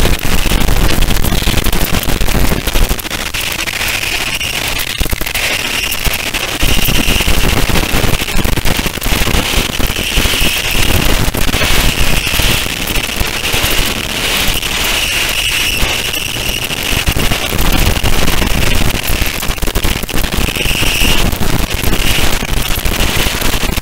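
Harsh noise: a loud, dense wall of crackling, distorted electronic static with a deep rumble beneath, and a shrill high band that swells in and fades out every few seconds.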